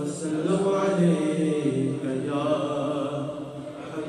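Male voice reciting a naat, an Urdu devotional poem in praise of the Prophet, sung as a melodic chant with long, wavering held notes.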